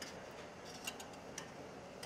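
A few faint, light metal clicks of a spoon against a stainless steel pot as a poached egg is fished out of the water.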